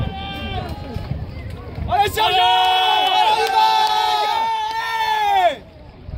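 Several people shouting long, drawn-out cheers of encouragement to a rowing crew, several voices held and overlapping. The shouts are quieter at first and loudest from about two seconds in, breaking off shortly before the end.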